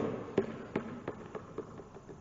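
Basketball bouncing on a hardwood gym floor. There are a few bounces, coming quicker and softer as the ball comes to rest.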